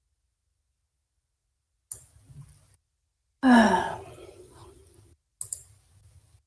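A person sighs, a drawn-out voiced breath falling in pitch about three and a half seconds in, heard over a video call whose audio cuts to dead silence between sounds. Brief clicks come about two seconds in and near the end.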